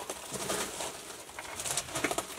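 Glass canning jars knocking and clinking as they are handled and set into a wooden crate, with rustling handling noise in short irregular bursts.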